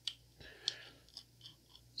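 A few faint, scattered clicks and light scrapes of a precision screwdriver bit turning a small screw out of a titanium folding knife's handle.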